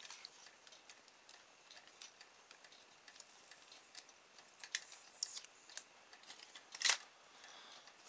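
Faint scattered clicks and taps of a plastic micro servo case being handled in the fingers, with one sharper click near the end.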